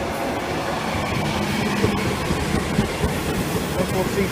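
A four-wheeled Class 143 Pacer diesel multiple unit runs past close by. Its diesel engine is running, and its wheels click irregularly over the rail joints.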